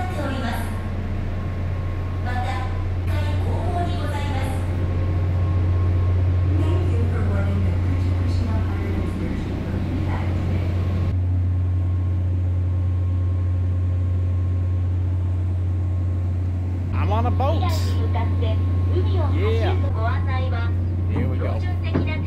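Steady low hum of the excursion boat's onboard machinery, with voices speaking over it for the first half and again near the end.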